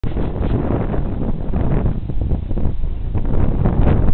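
Wind buffeting the microphone in a loud, steady low rumble, with short rustles mixed in.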